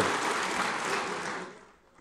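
Audience applause fading away, dying out about a second and a half in.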